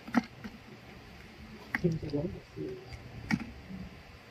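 Hinge joints of a folding aluminium-alloy phone stand clicking as the stand is unfolded and its arm swung out: three sharp clicks spread across a few seconds.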